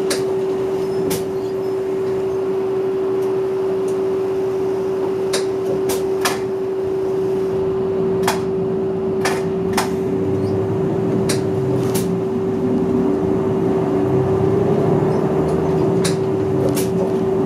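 Inside a city bus: the engine running in slow traffic under a steady, constant hum, with scattered sharp rattling clicks from the cabin. From about ten seconds in the engine rumble grows as the bus pulls away.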